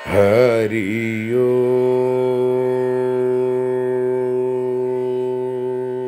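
A man's voice chanting over a steady drone: a short wavering phrase, then one long held note of about five seconds, as in a closing devotional chant.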